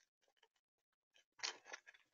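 A squirrel chewing and crunching seeds right at the microphone: faint scattered clicks, then a loud burst of crunching about one and a half seconds in.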